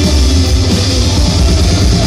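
Live rock band playing loud and without a break: drum kit and guitars over a heavy bass low end.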